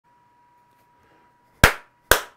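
A faint steady high tone, then a single sharp crack about one and a half seconds in that dies away within a few tenths of a second.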